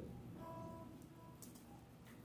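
A faint guitar note or two, ringing for about a second, over quiet room tone, with a small click near the end.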